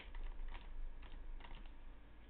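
Computer keyboard typing: a few short bursts of keystrokes.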